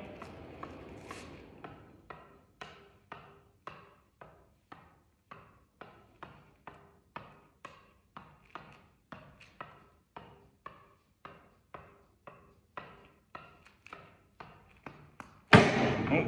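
A tennis ball tapped repeatedly straight up off the strings of a tennis racket, a short pock about twice a second, each with a faint ring from the strings. The taps stop shortly before the end.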